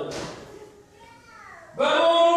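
Speech: a man preaching into a microphone in a large hall. His voice trails off into a brief lull that holds a faint voice falling in pitch, then resumes loudly just before the end.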